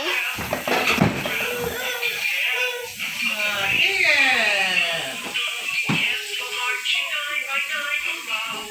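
A child's voice and music, with pitched, sliding vocal sounds rather than clear words.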